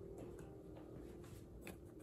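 The last held chord of a karaoke backing track dying away quietly, with a few soft clicks and taps from the recording device being handled; a sharper click comes near the end.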